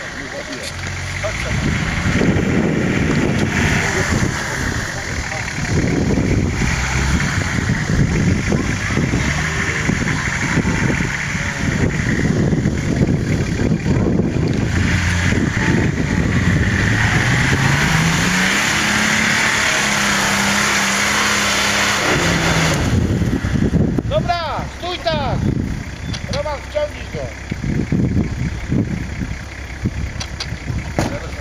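Lifted 4x4 off-roader's engine revving and pulling as it is driven over rough, uneven ground, the revs rising and falling, with one long climb to a held high rev near the middle. A few seconds from the end the sound changes, with the engine note sweeping up and down in quick surges.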